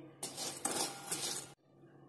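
A spatula stirring black chickpeas through hot salt in a heavy-bottomed kadhai, dry-roasting them: a gritty scraping rustle of salt and chickpeas against the metal pan. It cuts off abruptly about one and a half seconds in.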